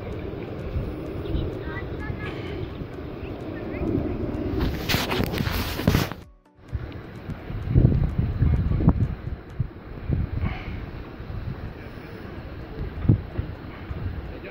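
Wind buffeting the microphone as a gusty low rumble. There is a louder rustling burst about five seconds in, and the sound cuts out abruptly about six seconds in before resuming.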